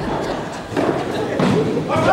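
Indistinct voices in a large hall, with a thud about a second and a half in.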